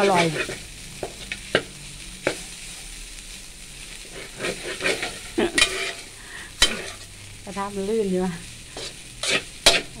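Metal spatula scraping and knocking against a wok as rice is stir-fried, over a steady sizzle of frying. The strokes come irregularly, with a cluster of them around the middle and another shortly before the end.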